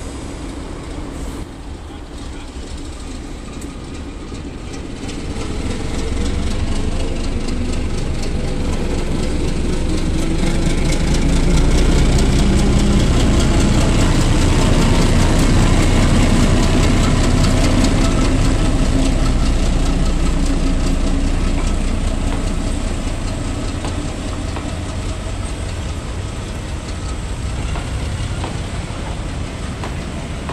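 Class 08 diesel shunter's English Electric six-cylinder engine running, growing louder as the locomotive comes close past and fading as its coaches roll by.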